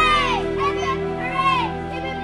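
Young children squealing, three high-pitched rising-and-falling cries, over background music with steady held notes.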